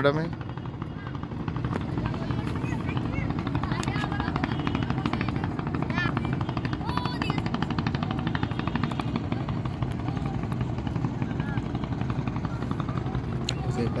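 A steady, low, evenly pulsing drone like a motor running, with faint voices in the background.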